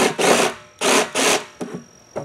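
Cordless jigsaw cutting through the top of a plastic 55-gallon barrel, run in four short loud spurts within about a second and a half.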